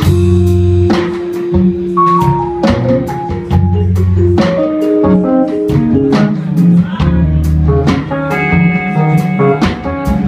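Live jazz-fusion band playing: electric guitar, keyboard, drum kit and electric bass. A cymbal crash rings just after the start, the drums keep a steady beat under long bass notes, and a falling line of notes comes about two seconds in.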